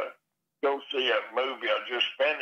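A man talking, with a brief pause shortly after the start.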